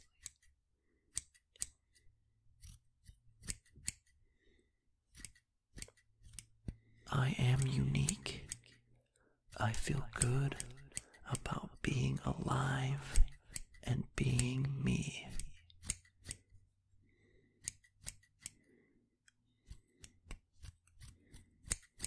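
Scissors snipping in short, sharp cuts, scattered irregularly throughout, with a stretch of soft voice in the middle.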